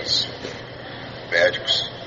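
A man's voice in two short spoken bursts, one at the start and one about a second and a half in, with a brief pause between them.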